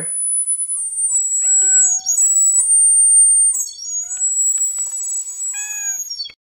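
A very high-pitched whistle sounding in long, steady notes that step up and down in pitch. A cat meows three times over it: about a second and a half in, about four seconds in, and near the end.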